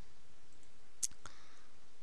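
Two computer mouse clicks about a second in, a quarter second apart, the first sharper, over the steady faint hiss of the recording.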